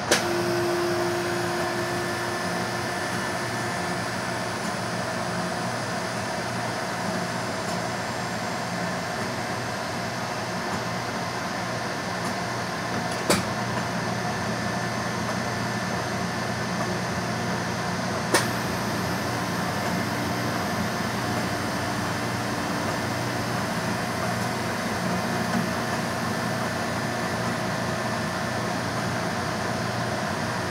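Taylor C712 three-phase air-cooled soft serve machine running while serving: a steady mechanical hum and fan noise from its refrigeration and beater drive. Two sharp clicks stand out in the middle.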